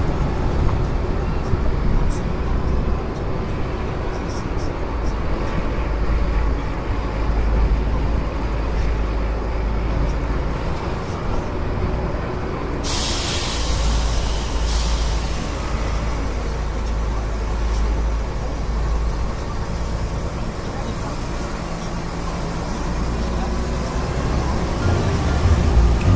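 Upper deck of an open-top double-decker tour bus on the move: a steady low engine and wind rumble. About halfway through, a hiss lasting two or three seconds rises over it.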